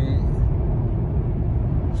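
Steady low rumble of road and engine noise inside a car cruising on a highway.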